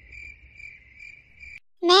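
Crickets chirring steadily, the stock 'awkward silence' sound effect, cutting off suddenly about one and a half seconds in.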